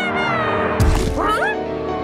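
Cartoon soundtrack: steady background music, a sudden hit about a second in, then a cartoon character's short, squeaky cry that glides upward in pitch.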